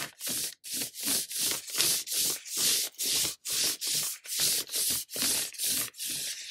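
Ink brush swept hard across crinkled hanji paper in quick, repeated strokes, a little over two a second. Each stroke is a dry, scratchy rasp of bristles on paper.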